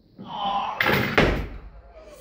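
A 110 kg barbell clean: the lifter strains aloud during the pull. About a second in come two heavy thuds, close together, as the bar is racked on his shoulders and his feet land in the squat catch, with the plates rattling and ringing briefly.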